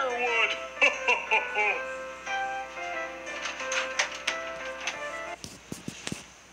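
Music with a voice over it, coming from a video on a phone. It cuts off abruptly about five and a half seconds in, followed by a few clicks.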